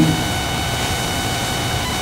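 Steady background hiss, with a few faint, steady high tones running through it.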